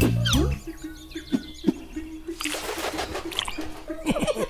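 Cartoon soundtrack: a loud music phrase breaks off about half a second in. It gives way to a quiet held note with small, quickly repeating bird-like chirps. In the second half comes a brief hissing passage.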